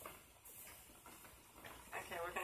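Near silence with a few faint ticks, the sharpest right at the start: dry angel hair pasta strands knocking against the cooking pot as they are pushed down into the water.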